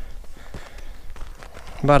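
Footsteps on a dirt and grass hiking path: a few soft, irregular steps.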